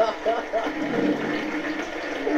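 Studio audience applauding, heard through a TV speaker, with some voices mixed in.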